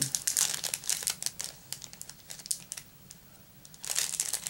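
Clear plastic wrapping crinkling and crackling in the fingers as a small wrapped packet is picked open, with a brief lull shortly before the end.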